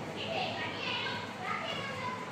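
A child's high-pitched voice speaking in short bursts, over steady background noise.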